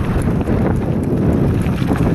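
Wind rushing over the microphone of a mountain bike rolling downhill, mixed with its tyres running on a gravel dirt road and light rattling of the bike over bumps.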